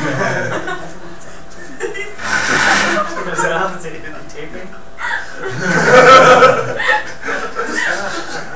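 People's voices with chuckling and laughter, in two louder bursts about two seconds and six seconds in.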